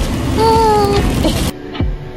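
Wind buffeting the microphone with a held, slightly falling tone over it, then an abrupt cut about one and a half seconds in to quieter room sound with background music.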